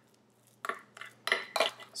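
Metal fork knocking and scraping against a white ceramic bowl while mixing soft butter and cheese: about five short clinks, starting a little over half a second in.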